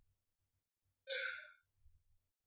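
A person's sigh: one short breathy exhale about a second in, lasting about half a second.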